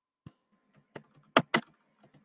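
Computer keyboard being typed: a handful of separate key clicks, with two louder ones close together about a second and a half in, as 'sudo' is typed in front of a terminal command and the command is entered.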